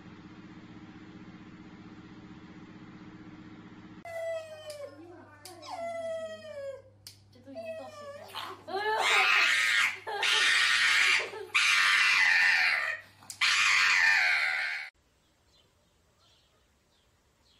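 A pug whining in falling cries, then screaming in about four loud, long bursts while its claws are clipped. This is a dog in distress at having its nails trimmed. Before it there is a faint low steady hum, which stops suddenly as the dog's cries begin.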